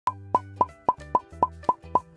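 A rapid string of eight cartoon pop sound effects, about four a second, each a short bright plop, over a light music backing.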